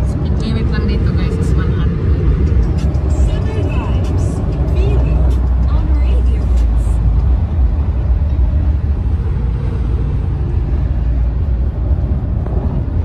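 Steady low rumble of a BMW car's road and engine noise, heard from inside the cabin while cruising at highway speed. Faint voices and music sit over it in the first few seconds.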